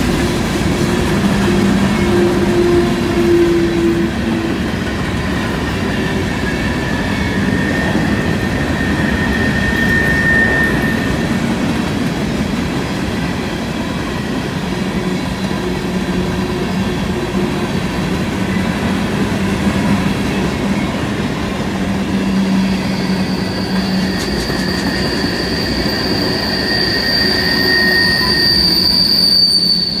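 Freight cars rolling past on a curved track, steel wheels on rail with a steady rolling rumble and intermittent wheel squeal from the curve. A high-pitched squeal builds and grows loudest over the last several seconds.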